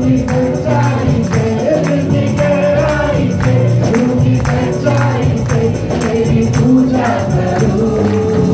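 Live gospel worship song: a man sings into a microphone over a steady tambourine beat, with accompanying singers and instruments.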